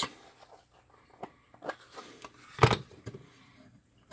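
A few light clicks and knocks from the screwdriver kit's bit case and bits being handled, the loudest about two and a half seconds in.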